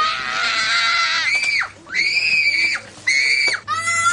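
A young child screaming in a temper tantrum: long, high-pitched screams, each held for about a second or more, with short breaks between them. The first scream falls slightly in pitch.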